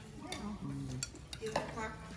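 Spoons and cutlery clinking against ceramic plates and bowls in a few light, scattered clicks as people eat, with brief voices in between.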